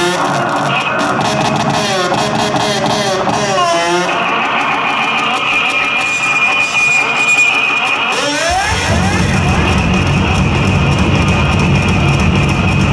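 Live noise-rock from an electric bass guitar and drum kit: warbling, pitch-bending effected sounds and a steady high feedback tone, then about eight and a half seconds in the full heavy low end of the bass and drums comes in.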